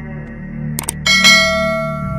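Subscribe-button sound effects over a steady background music drone: a quick double mouse click, then a bright notification bell chime that rings out and slowly fades.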